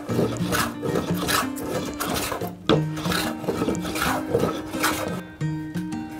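Hand sanding block rubbed back and forth along a rough reclaimed barn timber, in quick strokes about two a second, stopping about five seconds in. Background music plays under it.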